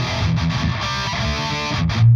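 Distorted electric guitar played through a Two Notes Torpedo CAB M+ cab simulator, chords and riffing with a very bright, treble-heavy tone from the enhancer's Brilliance control turned up high.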